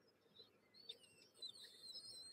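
Near silence, with a few faint, high, thin squeaks from a woman's almost soundless laughter.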